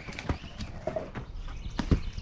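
A few sharp knocks and clicks at irregular intervals, the strongest near the end.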